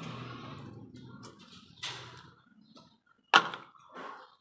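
A loud sharp knock about three seconds in, with a couple of lighter clicks before it and a smaller knock just after, over low room noise.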